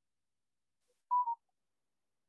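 A short electronic beep about a second in: two brief tones close together, the second slightly lower in pitch.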